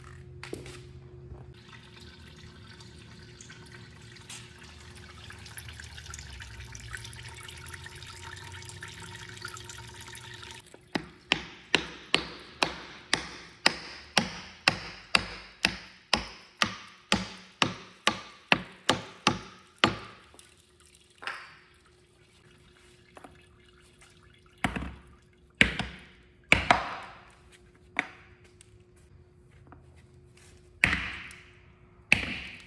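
Hammer blows on a wooden block held against a Caterpillar 3406E's brake oil cooler, knocking the stuck cooler loose. A steady hiss for about ten seconds gives way to a quick run of sharp knocks, about three a second, for nine seconds, then a few scattered heavier knocks near the end.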